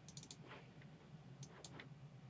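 Near silence with a few faint clicks of a computer mouse: a quick cluster at the start, then single clicks about half a second in and around a second and a half in.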